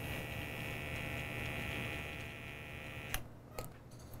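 Motorized pipette controller whirring steadily as it dispenses lysis buffer through a serological pipette into a tube. The motor cuts off suddenly about three seconds in, followed by a couple of light clicks.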